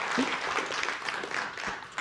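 Audience applauding, the clapping slowly fading away.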